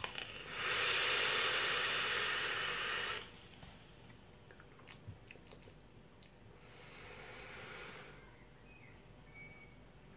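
A drag on a vape: a steady hiss of air drawn through the e-cigarette for about two and a half seconds, then a softer, breathy exhale of the vapour about seven seconds in.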